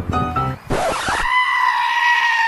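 Piano music breaks off, a short burst of hiss follows, and then comes a long, high-pitched held cry that stays at one pitch.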